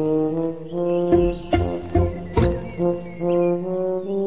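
Cartoon background music: a low brass tune of held notes changing about every half second, with a few short knocks in it.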